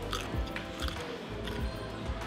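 Background music, with a man biting and chewing a pickle in short, quiet crunches.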